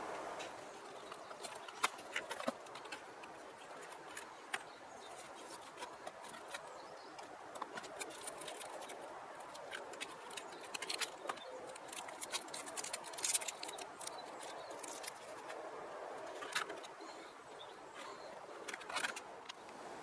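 Faint clicks and crinkles of clear plastic packaging being handled as a model locomotive is slid out of its box, scattered irregularly over a steady background hiss.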